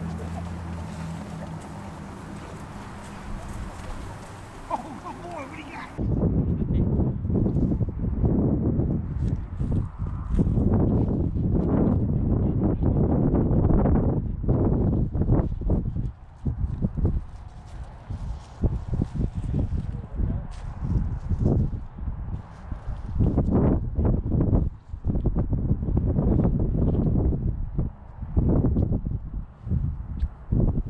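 Wind buffeting the microphone in loud, irregular low gusts with brief lulls, starting abruptly about six seconds in; before that, a steady low hum.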